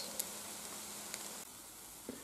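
Crepe cooking in butter in a nonstick frying pan: a faint steady sizzle with a couple of light ticks, dropping a little quieter about one and a half seconds in.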